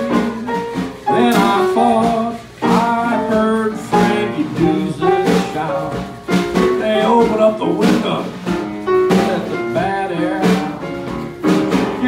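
Small traditional jazz band playing a blues: upright piano and snare drum, with a man's voice singing into a microphone over them.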